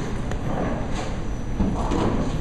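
Bowling ball rolling down a wooden lane with a steady rumble, then hitting the pins with a clatter about a second in.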